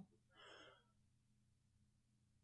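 Near silence in a pause between sentences, with one faint breath from the host about half a second in over a faint steady low hum.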